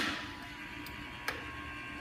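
Maxon 5000 series electromechanical gas safety shutoff valve being cycled: the ringing of a sharp mechanical clack fades, leaving a quiet steady hum with a faint high tone and a small click about a second and a half in.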